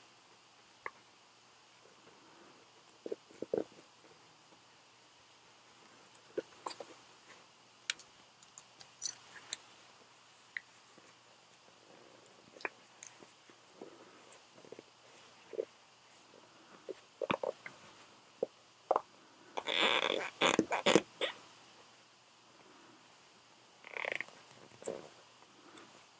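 Handling noise from a Sena SPH10H headset unit and its Velcro tab being worked into a half helmet's padded fabric liner: scattered small rubs, scrapes and taps, with a louder scratchy rustle about twenty seconds in.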